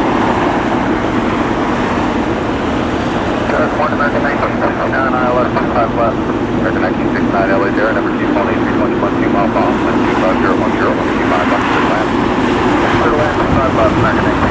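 Steady rumble of an Airbus A380's jet engines on final approach, mixed with road traffic, with indistinct voices over it.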